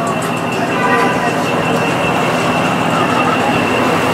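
Several BMW cars running at low speed as they roll slowly past in a line, a steady engine drone with voices in the background.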